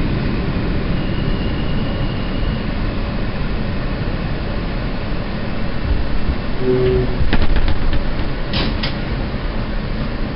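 New York City subway car rumbling as it slows into a station and stops. A few sharp clicks and two short hisses come about seven to nine seconds in as it comes to a halt.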